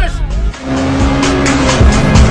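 A Ferrari's engine, heard loud over background music with a steady beat; about half a second in, a sustained engine note sets in.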